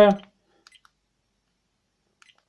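Three quick, faint clicks about two-thirds of a second in: the buttons of an SJCAM SJ5000X Elite action camera being pressed to move through its settings menu.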